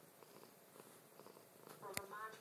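Domestic cat purring faintly, close to the microphone. A sharp click comes at the very end.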